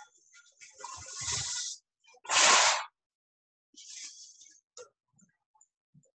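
Aluminium foil crinkling and rustling in three bursts as a sheet is pulled off the roll and torn; the loudest is a sharp rush about two and a half seconds in.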